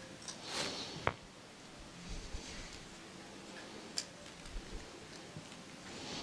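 Small hand-tool and screw sounds at the aluminum oil-seal ring of an Agri-Inject Series G pump: a brief scrape, then a sharp click about a second in, the loudest, followed by a few light ticks as the small retaining screws are worked.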